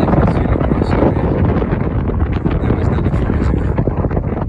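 Wind buffeting the microphone: a loud, gusting low rumble.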